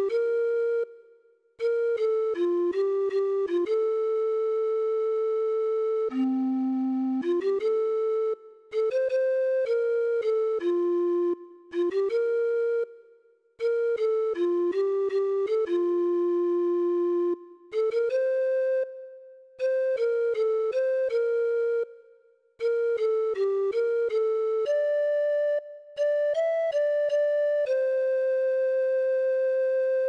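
A simple melody played one note at a time in a recorder-like wind tone, phrase by phrase with short breaks between, following the recorder fingering chart and ending on a long held note.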